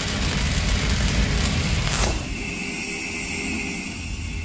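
Cinematic logo-intro sound effect: a loud, rumbling rush. About two seconds in, a falling sweep ends it, leaving a thinner steady high tone that slowly fades.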